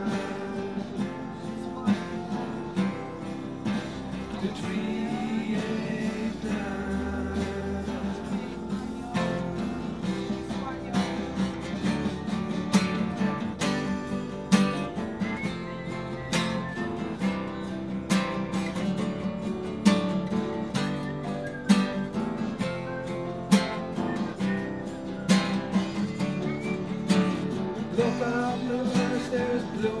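Acoustic guitar played without vocals, chords strummed and picked, the strums growing sharper and more accented in the second half.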